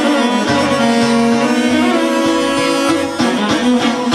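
Instrumental break in Bosnian izvorna folk music: violin and saz carry the melody over a Korg keyboard with a steady bass beat, and no singing.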